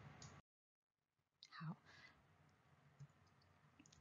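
Near silence: faint room tone, broken by a stretch of dead silence, with one faint short sound about one and a half seconds in and a tiny click near the end.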